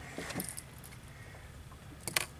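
A few light metallic jingles and clicks about a quarter to half a second in, then quieter: fishing tackle rattling as a landed fish swings on the line.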